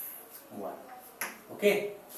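A man's voice saying a few short words, with one sharp tap of chalk on a blackboard a little past halfway.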